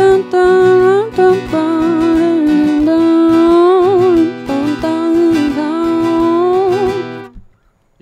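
A woman singing long held notes over strummed acoustic guitar; the voice and guitar stop together about seven seconds in.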